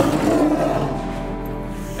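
A tiger's drawn-out roar that fades away over about a second, over background music.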